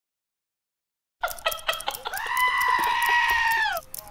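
A long, high-pitched wavering cry, held for nearly two seconds, after about a second of silence and a few sharp clicks; it breaks off just before the end.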